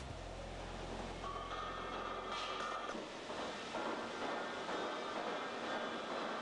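Steady machinery noise of a hot-rolling section mill in operation, with a low hum in the first half that fades out, and a brief hiss about two and a half seconds in.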